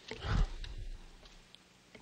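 A man's heavy breath out close to a podium microphone, loudest about half a second in and fading within a second.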